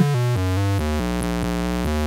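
Analog modular synthesizer sequence played through a Doepfer A-106-1 Xtreme Filter, with its low-pass and some positive high-pass blended and the resonance turned up high. The pitched notes step in pitch several times a second, with one longer held note in the middle.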